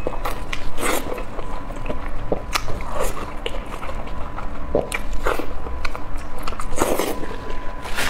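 Close-miked biting and chewing of a sauce-coated roasted green chili pepper, with irregular short mouth clicks and smacks.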